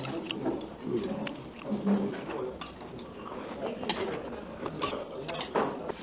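Eating sounds at a table: many small irregular clicks from chewing and from chopsticks and spoons touching bowls and plates, with faint voices underneath.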